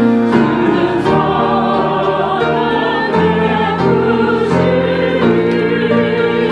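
A small mixed church choir singing with upright piano accompaniment, voices holding long sustained notes that change every second or so.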